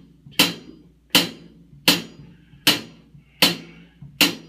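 Hi-hat cymbal struck with a drumstick in steady quarter notes, keeping time: five even strokes about three-quarters of a second apart.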